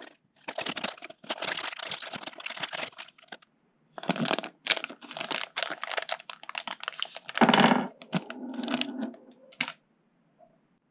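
A thin clear plastic parts bag crinkling and rustling in the hands as a small part is handled inside it, in two long stretches with a louder crackle about three quarters of the way through.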